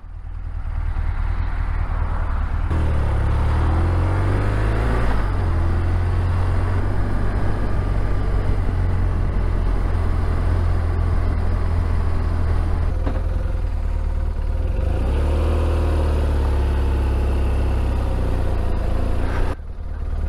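Motorcycle on the move: a deep steady rumble of wind and road noise over the engine, which rises in pitch as the bike pulls away, about three seconds in, and again about fifteen seconds in.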